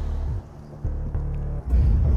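Background music: deep bass notes held in turn, with faint sustained tones above, the loudest note starting near the end.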